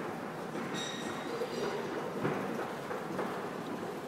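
Escalator running, a steady mechanical rumble under the echoing noise of a large indoor hall with indistinct voices. A few faint high tones sound about a second in.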